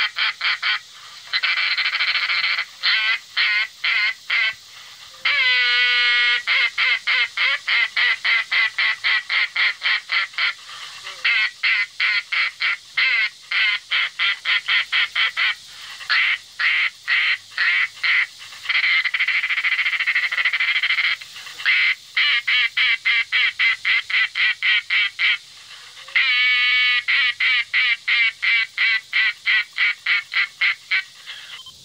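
Handmade acrylic duck call blown in long series of quacks, mostly fast runs of short notes at about five or six a second, with a longer held note about six seconds in and again near the end, broken by brief pauses.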